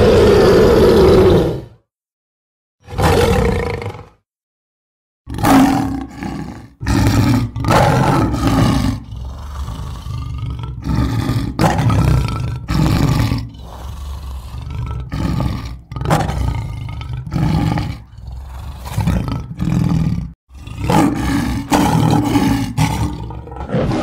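Animated-film cartoon lion roaring: one long roar at the start, a shorter one a few seconds in, then after a brief gap a rapid string of short roars and growls that rise and fall in pitch.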